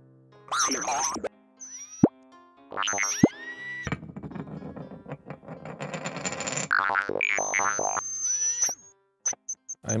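Cartoon sound effects over light music: wobbling boings, two quick sounds that fall steeply in pitch about two and three seconds in, a longer noisy stretch in the middle, then a few short ticks near the end.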